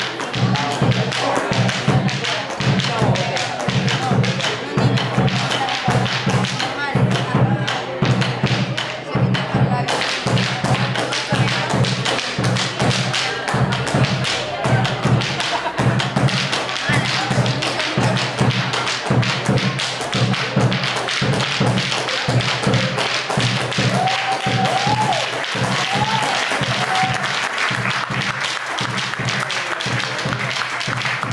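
Rapid, rhythmic foot-stamping of a male folk dancer's zapateo, driven by the steady beat of a bombo legüero drum struck with sticks. The sharp heel and toe strikes come thick and fast over the drum's low pulse.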